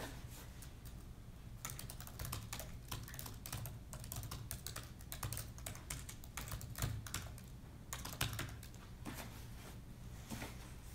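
Typing on a MacBook laptop keyboard: quick runs of key clicks starting about a second and a half in, broken by short pauses.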